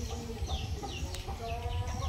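Birds, likely chickens, calling: short downward-sliding chirps, several a second, over a low rumble, with a single sharp click just after a second in.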